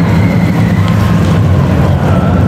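Carolina Cyclone's steel coaster train running on its tubular track: a loud, steady low rumble.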